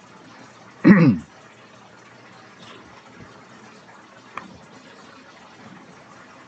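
A man clears his throat once with a short voiced sound about a second in. Otherwise only a low steady hiss of room noise, with one faint click near the middle.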